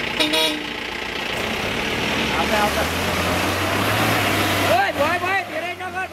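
An SUV engine revving hard under load, its pitch climbing slowly over a few seconds, as a four-wheel-drive stuck in deep mud is pulled free on a tow strap by another jeep. Men call out over it.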